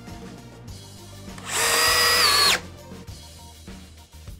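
DeWalt DCD800 Compact XR brushless cordless drill driving a 4-inch GRK screw into wood. It is one high motor whine lasting just over a second, with the pitch dropping just before it stops as the screw seats. Background music plays underneath.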